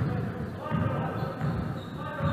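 Basketball being dribbled on a wooden gym floor, a series of repeated thumps echoing in a large hall.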